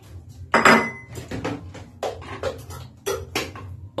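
Kitchenware clinking and knocking: metal hand-mixer beaters being handled and fitted, and a bowl being set down. It comes as a series of sharp knocks, the loudest about half a second in with a brief metallic ring.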